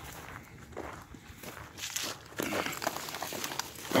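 Footsteps and the rustling of conifer branches as a fallen tree is pulled off a dirt road, in irregular bursts that get louder about halfway through.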